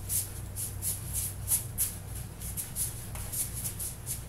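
Soft rhythmic swishing and shuffling, about three to four strokes a second, from a man moving to music with three-pound hand weights, over a steady low hum.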